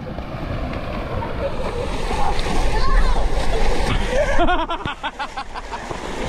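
Several people running and splashing through shallow water, a wash of splashing that grows louder as they come closer, with shouting voices over it in the last couple of seconds.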